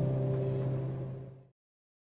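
The last acoustic guitar chord of a song ringing out and fading away, cut to silence about one and a half seconds in.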